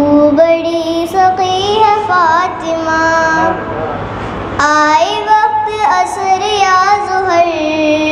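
A young girl singing a naat, an Urdu devotional song, into a microphone, holding long, steady notes with a short pause about halfway through.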